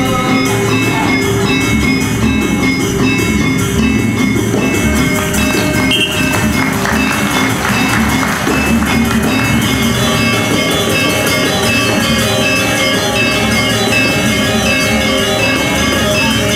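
Sasak gamelan ensemble of metallophones and double-headed drums playing steadily, with a noisier swell roughly six to nine seconds in.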